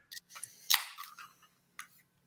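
An aluminium beer can cracked open: one sharp snap of the tab with a short hiss about three-quarters of a second in, among a few light clicks of the can and pint glass being handled.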